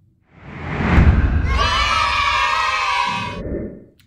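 A loud edited-in intro sound effect. A rising whoosh swells up, then a burst of high, many-toned sound lasts about two seconds and fades out near the end.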